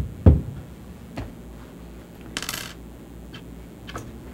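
Two heavy thumps close to a desk microphone right at the start, then a few light knocks and a short paper rustle about two and a half seconds in, as papers are handled and signed on the desk beside it.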